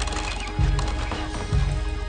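A large hanging bossed gong struck three times, deep booms about a second apart, over background music.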